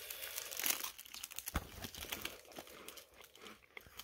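An orange sandwich cracker being bitten and chewed: irregular crisp crunching, with one sharper crunch about one and a half seconds in.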